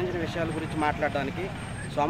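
A man speaking in an outdoor interview, over a steady low rumble underneath.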